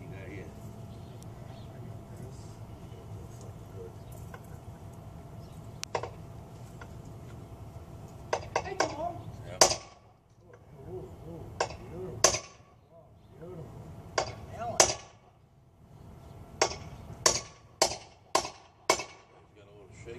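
Sharp metal-on-metal strikes from hammering on a part held in a stand: a single hit about six seconds in, then quick runs of hits in the second half, about fourteen in all.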